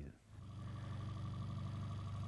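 Boat motor running steadily at trolling speed, a low even hum that starts a moment in.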